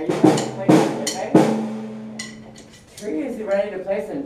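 Three loud strikes on a drum kit within the first second and a half, the last one leaving a low ringing tone. Voices talk near the end.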